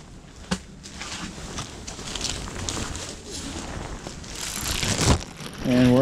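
Rustling and crackling handling noise from clothing and a moving camera, with scattered clicks and crunches, growing louder near the end. A man's voice starts just before the end.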